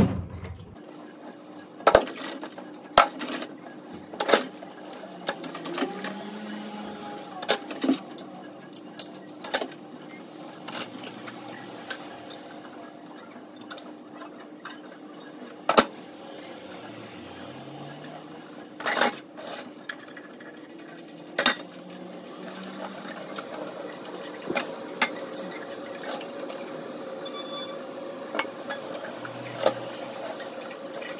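Dishes being washed by hand in a stainless steel kitchen sink: scattered, irregular clinks and knocks of crockery and utensils, with the tap running near the end.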